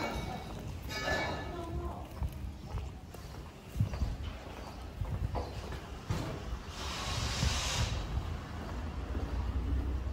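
Footsteps walking on brick block paving, as irregular knocks over a steady low rumble on the handheld phone's microphone. A brief hiss comes about seven seconds in.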